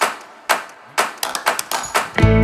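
Rhythmic percussion: a short pattern of sharp claps or taps, each with a brief ring, played twice in quick succession, leading into background music.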